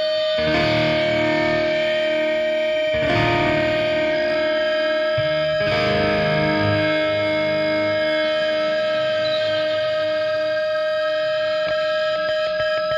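Instrumental passage of easycore/ethereal rock: distorted, effects-laden electric guitar chords struck three times, about half a second, three seconds and six seconds in, each left to ring out over a held steady tone, with no vocals.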